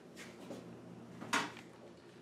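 A single short clack a bit over a second in, over faint room noise.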